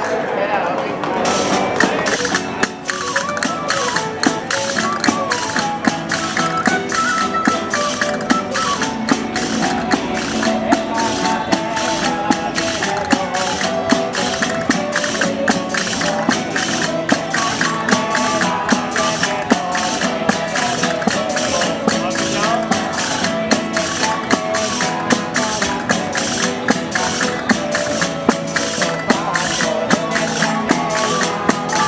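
A street folk band playing a Christmas carol on guitars, a plucked Spanish lute, a violin and frame tambourines, with the tambourines keeping a fast, even beat of jingling strikes under the melody.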